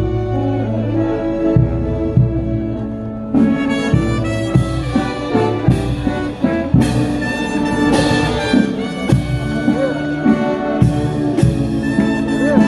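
Brass band playing a procession march: trumpets and trombones hold sustained chords over a regular drumbeat.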